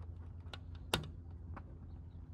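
Convertible top's windshield-header latches worked by hand: three short clicks, the one in the middle a sharper, louder snap. A steady low hum runs underneath.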